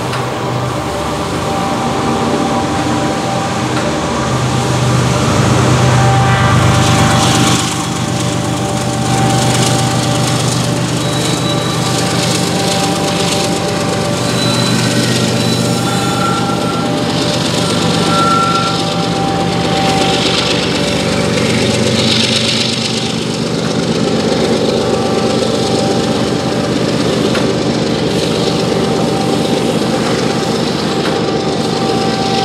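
Loaded coal train rolling by: loaded hopper cars clattering over the rails, under the steady drone of a mid-train diesel locomotive working in the consist. A few brief high wheel squeals come through around the middle.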